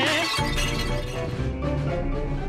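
A sung film-style song cuts off with a sudden shattering, glass-breaking crash that fades over about half a second, then background music with a low bass line carries on.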